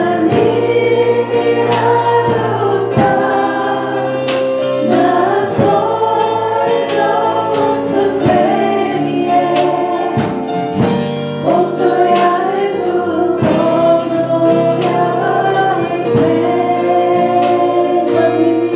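A live worship song: women singing into microphones with a band, sustained chords and a regular drum beat running under the vocals.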